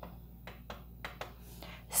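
A few faint clicks from the detented control knob of an Original Prusa MK3S LCD panel as it is turned by hand, over a quiet room with a low steady hum.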